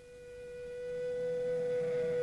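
A single held note, steady in pitch with a row of overtones, swelling steadily louder as the opening of the next song on the album.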